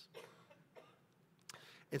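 A faint cough in a quiet pause, then a sharp click, before a man starts speaking again.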